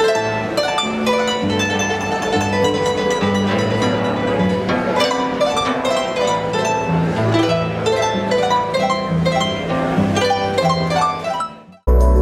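Folk harp played by hand: a quick run of plucked melody notes over a plucked bass line. It stops abruptly near the end.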